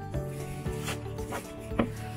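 A plastic bag rustling as it is handled and pulled off a torch, with a few short sharp handling noises, over steady background music.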